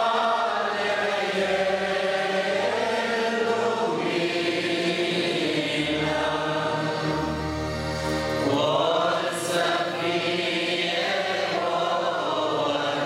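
A congregation of mostly men's voices singing a hymn together in long held notes.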